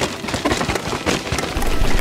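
Cannondale Habit LT full-suspension mountain bike descending a rooty dirt trail: a dense, rapid crackle of tyre noise with knocks and rattles as it rolls over roots.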